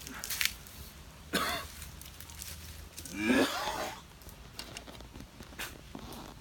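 A man coughing and clearing his throat in three bouts, the longest and loudest about three seconds in. It is a reaction to the burn of a Carolina Reaper chili pepper.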